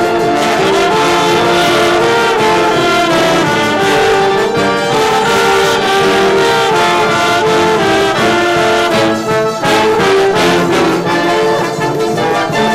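A live band of trumpets, clarinets, saxophone and tuba over strummed guitars, playing a lively instrumental tune.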